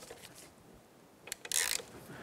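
A hand ratchet with a 5 mm Allen bit clicking as it tightens the brake pad pins on a motorcycle's rear caliper: a few clicks a little after a second in, then a short burst of ratcheting.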